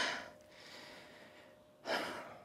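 A woman's laugh trailing off, then a quick audible intake of breath near the end.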